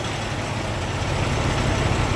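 Semi-truck diesel engine idling: a steady low rumble.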